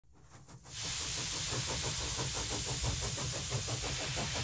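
Steady hiss of escaping steam, starting just under a second in, with a fast rhythmic beat running beneath it.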